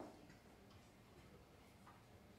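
Near silence: room tone with a few faint clicks, the first right at the start.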